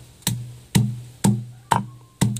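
Claw hammer striking a cloth-wrapped bundle of dried castor beans on a flat board, crushing the seeds. There are four evenly spaced blows, about two a second, and each leaves a brief low ringing tone.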